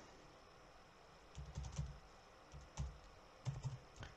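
Faint computer keyboard typing: a few short runs of keystrokes, starting about a second and a half in.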